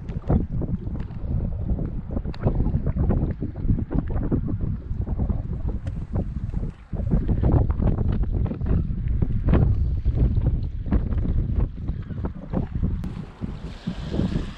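Wind buffeting the camera's microphone in a loud, gusty low rumble, with a brief lull about halfway through.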